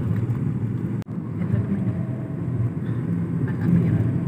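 Car driving along a road, with a steady low rumble of engine and tyres heard from inside the cabin. The sound breaks off for an instant about a second in.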